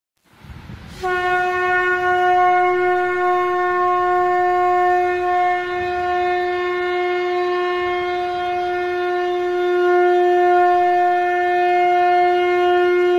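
A single held note sounding like a wind instrument, rich in overtones, that comes in about a second in after a short rush of noise and stays at one steady pitch.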